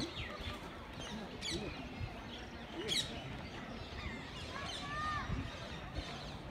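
Birds chirping and calling over steady outdoor background noise, with sharp high chirps about one and a half and three seconds in.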